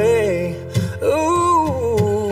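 Music: a man singing held, sliding notes over acoustic guitar, in a soul ballad cover.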